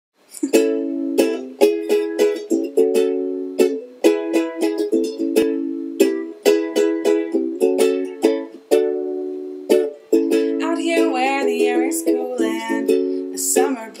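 Aloha ukulele strumming chords in a steady rhythm, each strum starting sharply and ringing on: the instrumental introduction to a folk song.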